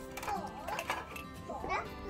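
Quiet children's voices over background music.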